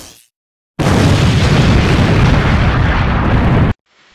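Loud explosion-like sound effect on an intro title card: a rumbling burst starts just under a second in, holds for about three seconds, and cuts off suddenly, after the fading tail of an earlier burst at the very start.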